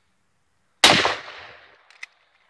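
A single rifle shot about a second in: one sharp crack whose tail fades over most of a second. A couple of faint clicks follow near the end.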